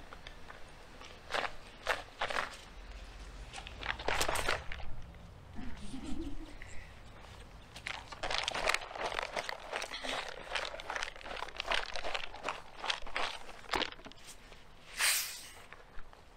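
Handling noises from a plastic soft-drink bottle and rubber-gloved hands: irregular crinkling, clicks and knocks in uneven bursts, with a louder cluster about halfway through.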